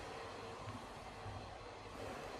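Quiet, steady background noise: room tone with a faint low rumble and no distinct event.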